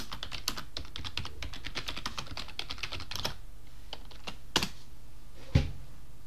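Typing on a computer keyboard: a fast run of keystrokes for about three seconds, then two separate, louder key strikes near the end, the last with a thump.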